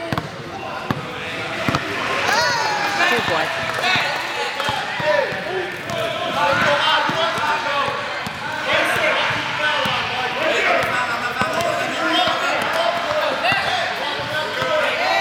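A basketball bouncing and being dribbled on a hardwood gym court, with a babble of many overlapping spectator and player voices.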